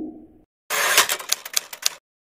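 Typewriter sound effect: a quick run of sharp key clicks lasting about a second, starting a little after the fading end of a whoosh.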